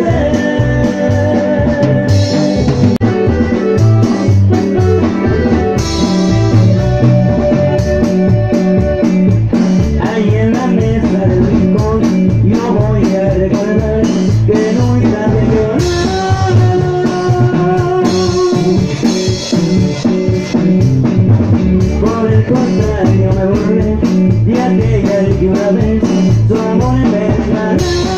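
Live band playing loud amplified dance music on electronic keyboards and a drum kit, with a steady, regular bass beat.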